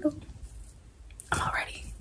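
Speech only: the end of a woman's exclaimed word, a short pause, then breathy, whispered speech in the second half.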